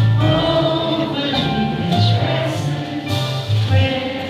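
A live jazz ballad: a male voice singing over grand piano, upright double bass and drums, with sustained low bass notes throughout.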